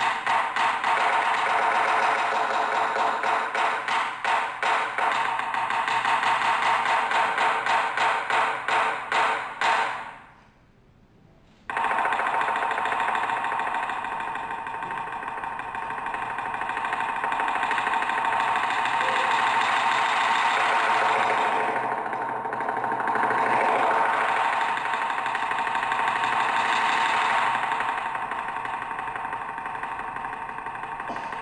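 Taiko drum (a red nagado-daiko on a slanted stand) struck with bachi sticks. A fast run of evenly accented strokes stops abruptly about ten seconds in. After a brief near-silent pause, a continuous drum roll swells and fades.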